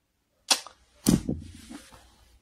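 Two sharp knocks about half a second apart, the second heavier, with a short tail that fades out.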